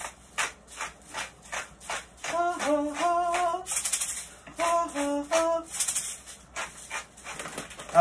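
Pepper mill grinding black pepper in quick clicking turns, about four a second, for a couple of seconds near the start and again near the end. In between, someone sings a few held notes.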